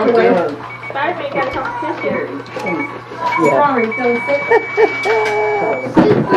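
People talking over one another in a room, with a high electronic beep that sounds in short pips and then holds as one steady tone for about two seconds near the end.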